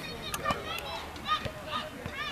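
Young footballers shouting short, high-pitched calls to one another across an open pitch, with a couple of sharp thuds of the ball being kicked about half a second in.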